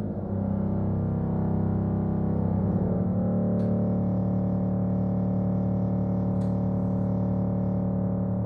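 Schiedmayer pedal harmonium, a reed organ from about 1930, sounding long held chords in the low and middle register in a slow improvisation; the chord moves just after the start and again a little before the middle. Two faint clicks are heard over the held chord.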